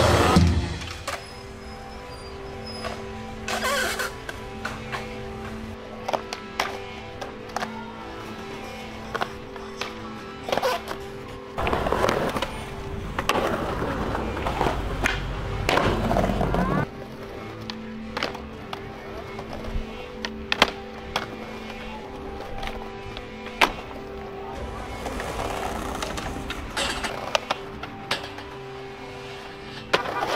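Skateboard sounds: wheels rolling on concrete and pavement, with sharp clacks scattered throughout as the board pops and lands. There is a louder stretch of rough rolling in the middle, all over a quiet, steady music drone.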